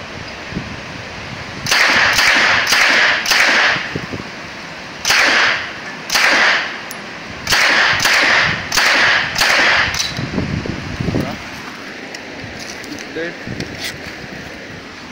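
Uzi submachine gun firing ten single shots in three groups: four in quick succession, then two, then four, about half a second apart within each group. Each shot is followed by a short echo.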